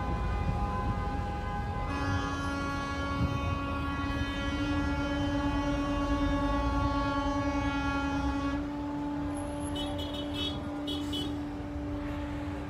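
Vehicle horns held in long steady blasts over the low rumble of traffic, with a louder, lower horn joining about two seconds in and dropping out after about eight and a half seconds.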